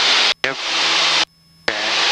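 Cockpit intercom of a small plane on takeoff: each short spoken word opens the headset mic, which passes a loud rush of engine and wind noise for under a second before it cuts off sharply. This happens twice, with a faint steady engine hum in the gaps.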